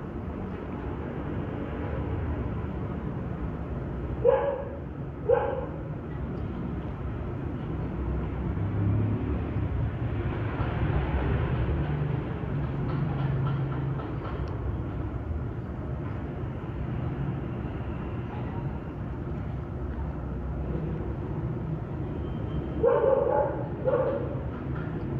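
A dog barking: two short barks about four and five seconds in and another couple near the end, over a steady low background rumble.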